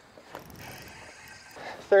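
Fishing reel being cranked to bring in a hooked walleye: a faint, steady mechanical whirr.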